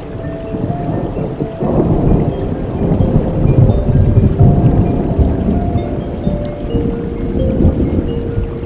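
Steady rain with slow, sustained music notes laid over it. About a second and a half in, a low rumble of thunder builds and rolls on for several seconds before easing off.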